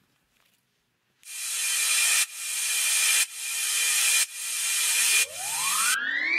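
Build-up of a hip-hop beat: after a second of silence, a filtered noise swell repeats about once a second, each one growing louder and then cutting off sharply. Near the end a pitched riser sweeps steeply upward toward the beat drop.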